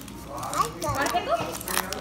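Voices talking in the background while paper pull-tab tickets are torn open by hand, with short tearing sounds near the end.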